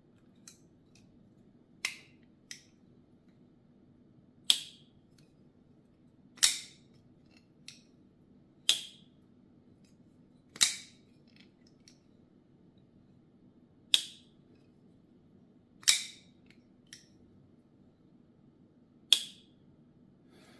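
A titanium flipper folding knife being flicked open and closed over and over: about eight sharp snaps of the blade locking open, a couple of seconds apart, with a few fainter clicks between as it is shut.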